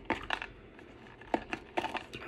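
Small jewelry box being worked open by hand: a few short sharp clicks and scrapes as the stiff lid resists.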